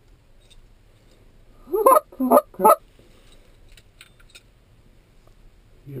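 Goose honking: three loud honks in quick succession about two seconds in.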